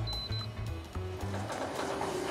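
Two short, high electronic beeps from a gate-entry keypad as a code is punched in, in the first half second. Background music with a low bass line plays throughout.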